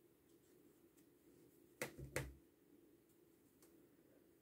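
Near silence: room tone with a faint steady hum. About two seconds in come two soft clicks close together, from hands working a metal crochet hook through yarn.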